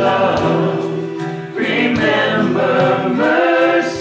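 Worship team of women's and a man's voices singing a worship song together through microphones, backed by percussion with regular drum and cymbal strikes.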